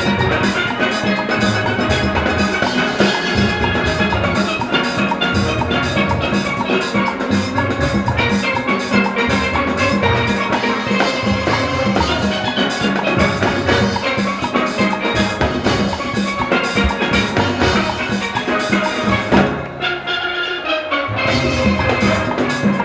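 A full steel orchestra playing a Panorama arrangement: many steelpans ringing out the melody and chords over drums and percussion, with a steady, driving beat. Near the end the sound thins out briefly and the level dips, then the whole band comes back in.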